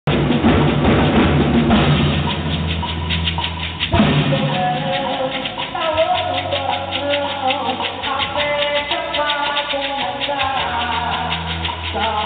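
A percussion group playing a driving axé rhythm on barrel drums and a hand-held drum, with one sharp hit about four seconds in. A voice sings over the drumming from about halfway.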